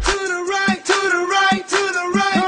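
Dance music with a sung vocal melody over a steady beat.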